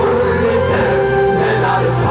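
A group of voices singing together over amplified backing music, with long held notes over a steady bass line.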